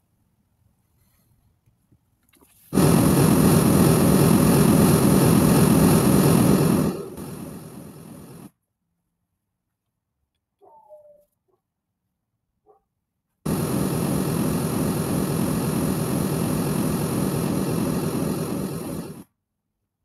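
Pink-noise test signal from Smaart's signal generator played through an 8-inch installation loudspeaker for acoustic measurement. There are two steady bursts of several seconds each, the first louder and stepping down partway through, and a short pause between them holds only a brief faint sound.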